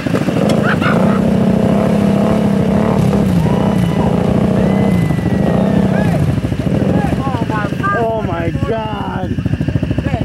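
An ATV engine running, its pitch rising and falling slightly. Voices call out briefly near the start and again near the end.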